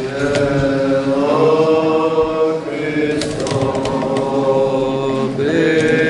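Orthodox liturgical chant: voices sing a drawn-out "Amen" and go on in long held notes that step up and down in pitch.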